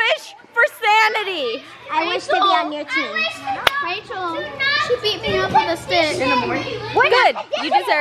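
Several young girls talking and calling out over one another, their voices overlapping too much to make out words. A single sharp click cuts through a little past the middle.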